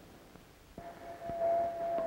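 Near silence, then about three-quarters of a second in a steady, single-pitched tone starts with a faint hiss and holds without change.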